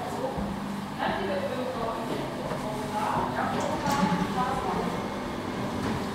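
Indistinct chatter of several people talking at once, with a few short sharp clicks about halfway through.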